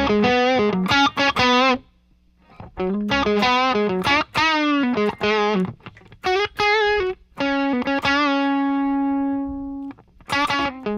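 Electric guitar through a Friedman Dirty Shirley overdrive pedal into a 1960s blackface Fender Bassman head, playing a lead line of single notes with wide vibrato and string bends. There is a brief break about two seconds in, and from about seven and a half seconds one long held note slowly fades.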